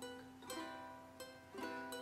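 Ukulele played softly in an instrumental gap: four plucked chords, each left to ring.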